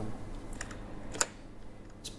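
A few light clicks from a computer key or button being pressed, two faint ones and then one sharper click about a second in, as the presentation slide is advanced.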